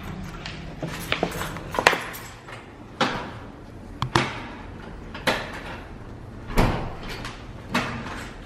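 An old key being worked in a wooden door's lock: a string of sharp clicks and clunks, roughly one every second, as the lock and door are rattled.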